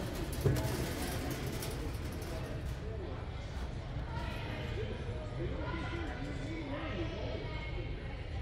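Indistinct voices of other people talking at a distance over a steady low hum, with a single soft knock about half a second in.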